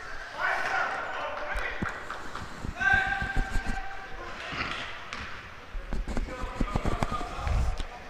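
A basketball bouncing on a hardwood sports-hall floor as it is dribbled from a wheelchair, with a run of sharp bounces in the second half. Players' voices call out across the hall.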